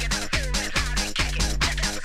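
Electronic dance track playing: a steady kick drum on every beat, about two beats a second, under a synth bass line that steps between notes.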